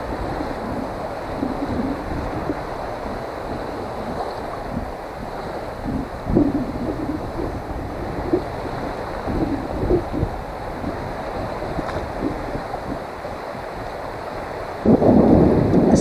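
Wind rumbling on the microphone in irregular gusts over small waves lapping on a saltwater shore.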